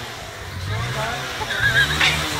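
Street traffic: a motor engine running with voices around, and a short warbling high-pitched call near the end.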